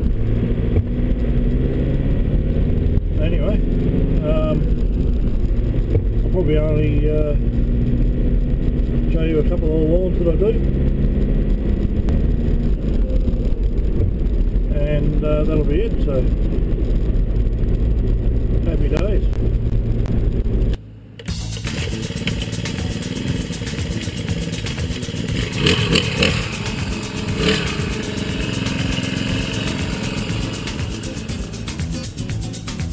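Steady low drone of a vehicle's engine and road noise, heard from inside the cab, with a few snatches of a man's voice. About two-thirds of the way through it cuts off abruptly and a different, busier sound takes over.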